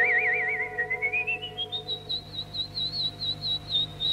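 A bird-like whistle with a wide, fast wobble. It climbs in small trilling steps from a middle pitch to a high note and holds it, over held orchestral chords in the film score.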